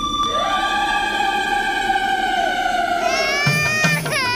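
Background music: one long held high note swoops up at the start and slowly sinks, and a drum beat comes in near the end.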